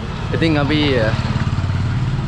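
Small motorcycle engine running close by, a steady low drone that comes up about a third of a second in and carries on.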